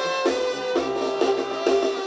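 Live Sinaloan banda music: the brass section plays held notes over a sousaphone bass line that pulses in an even beat, with drums.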